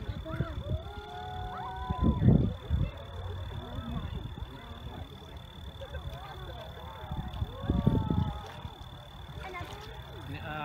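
Long, drawn-out exclamations from onlookers, one in the first two seconds and another near eight seconds in, over a steady low rumble, with a faint constant high whine.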